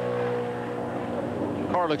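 NASCAR Winston Cup stock car's V8 engine running at speed on a lone qualifying lap, a steady, even engine note as heard on a TV broadcast.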